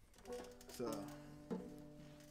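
Five-string banjo plucked one string at a time, a few single notes that ring on, played so a clip-on tuner on the headstock can read the pitch.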